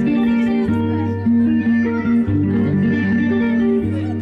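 Loud music with guitar and a bass line moving from note to note.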